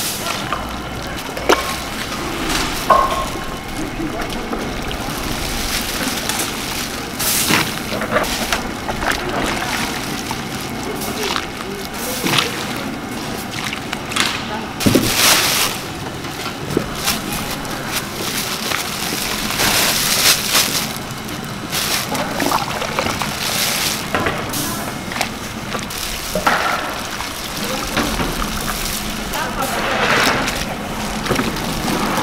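Hot soup being ladled and poured into plastic bags, with sloshing liquid, crinkling plastic and irregular short knocks and clatter from the ladle and pots.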